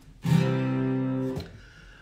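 A single chord strummed on an acoustic guitar, ringing for about a second before it is cut off.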